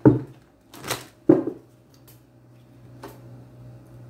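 Tarot cards being shuffled and handled: a few short sharp snaps, the loudest right at the start and two more about a second in, over a steady faint low hum.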